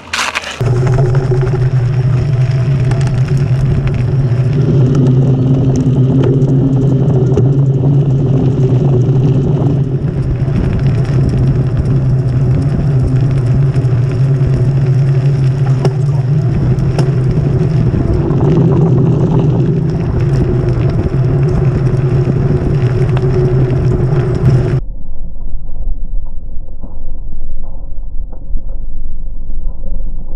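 Steady rumble and wind noise of a knobbly-tyred bike rolling along a rough trail, picked up by a camera mounted on the bike. Near the end the sound abruptly turns duller and muffled, leaving only a low rumble.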